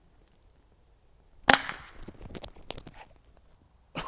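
Vacuum cannon firing: one sharp, loud pop about a second and a half in, as the packing tape sealing the top of the evacuated tube bursts and the projectile shoots out. A few fainter clicks and knocks follow.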